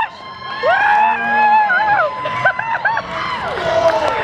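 A group of children cheering and squealing in high-pitched voices. One long squeal runs from about half a second in to two seconds, followed by a few short, quick whoops.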